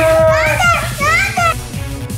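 Background music with a steady beat, with children's excited voices calling out over it.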